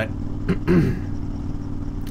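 Honda Fury motorcycle's V-twin engine running steadily while cruising, heard as an even low drone, with a brief voice sound about half a second in.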